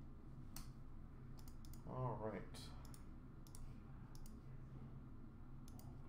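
Scattered clicks of typing on a computer keyboard. A person makes a short vocal sound about two seconds in.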